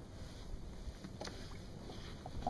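Wind rumbling on the microphone out on open water, with a faint click a little over a second in.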